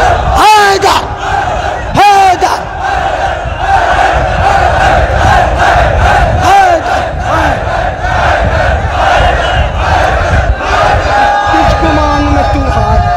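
A crowd of men shouting and cheering loudly in appreciation of a recited couplet, many voices at once, with single loud calls rising out of the din several times.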